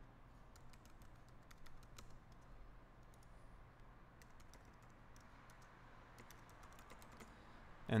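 Faint typing on a computer keyboard: two runs of quick key clicks with a short lull between them.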